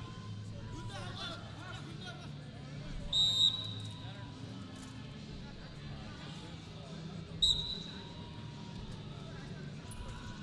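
Referee's whistle blown twice, a short blast about three seconds in and a sharper, briefer one about seven and a half seconds in, over a steady murmur of the arena crowd. The whistles stop the action on the mat and restart the wrestlers standing.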